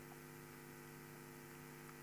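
Near silence with a steady low electrical hum.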